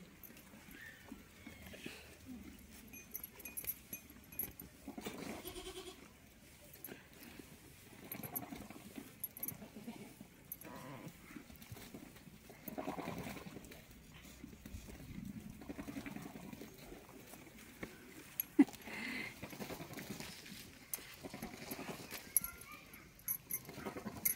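Goats bleating now and then, a few separate short calls over a low farmyard background, with one sharp click near the end.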